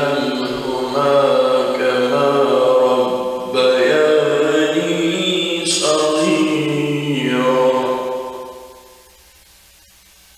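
Male voice reciting the Quran in slow melodic chant, drawing out long, ornamented notes. The voice fades out about eight and a half seconds in, leaving only a faint steady hiss.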